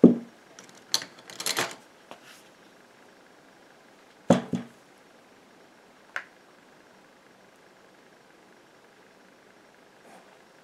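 Stainless steel bowl and a utensil knocking, clicking and scraping as cream is transferred into a small glass jar: a knock at the start, a cluster of clicks and scrapes over the next two seconds, two knocks about four seconds in, and one click about six seconds in.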